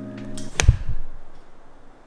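A quick whoosh ending in a sharp, low thump about two-thirds of a second in, followed by a fading tail, likely an edited-in sound effect on the cut. The background music stops just before it.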